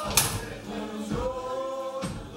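Live Creole jazz and spiritual music: several voices singing together in sustained, gliding notes, with a sharp percussion hit just after the start.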